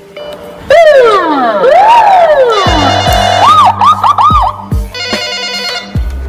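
Police siren sound effect laid over music, starting suddenly about a second in: a long falling wail, a rise and fall, then a quick run of yelps, under deep falling bass hits. Music with steady tones takes over near the end.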